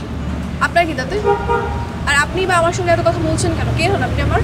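Voices over steady road-traffic rumble, with a brief vehicle horn sounding about a second in.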